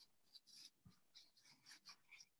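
Near silence: room tone with a few faint, scattered soft ticks.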